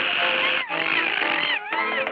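Early cartoon soundtrack: held orchestral notes with a high cartoon voice crying out over them in wavering, rising and falling wails.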